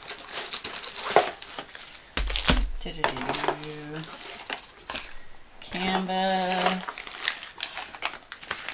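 Clear plastic packaging crinkling as a rolled diamond painting canvas in its sleeve is handled, with a heavy thump a little over two seconds in.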